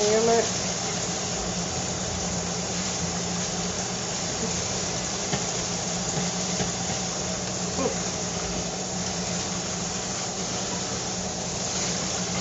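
Kitchen tap running steadily into a stainless steel sink as greens are rinsed, with a low steady hum underneath.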